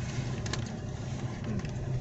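Car cabin noise while driving: a steady low engine and road hum heard from inside the moving car.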